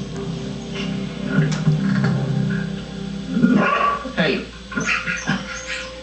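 Dog yelps and whines over background music, played through a television's speakers.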